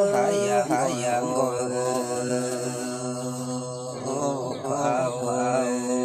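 A voice singing a Red Dao folk song (hát lượn) in long held notes. The pitch steps down just after the start, and the voice wavers in ornaments at the start and again about four seconds in.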